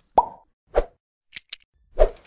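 Sound effects of an animated logo intro: a plop about a quarter second in, a short knock just under a second in, two brief high ticks around a second and a half, and a hit followed by a quick run of clicks at the end.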